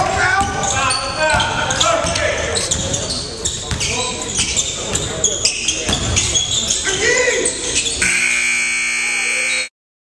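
Basketball scrimmage on a hardwood court in a large gym: a ball bouncing, short sneaker squeaks and players' voices, all echoing. About eight seconds in, a steady tone of several pitches starts, holds for under two seconds, and cuts off abruptly.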